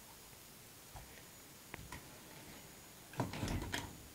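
Handling noise from a handheld camera being moved about: a couple of faint clicks about one and two seconds in, then a louder cluster of knocks and rubbing near the end.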